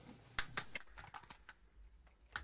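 A handful of faint, sharp clicks, most in the first second and a half, over a quiet background.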